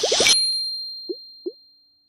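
Logo-animation sound effect: a quick fluttering whoosh that cuts off at the start, then a bright ding that rings on and fades away. Two short rising plops come about a second and a second and a half in.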